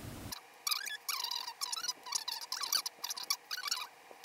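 A wet, serum-soaked Dr. Jart charcoal sheet face mask being unfolded and pulled apart by hand: rapid sticky crackling and squelching with small squeaks as the soaked sheet peels off itself.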